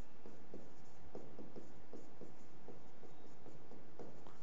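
Plastic stylus tip tapping and scratching on an interactive touchscreen board as words are written, a few faint, irregular taps a second.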